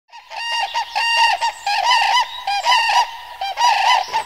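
A flock of wetland birds calling together: many short, arched calls repeated and overlapping, with no pause.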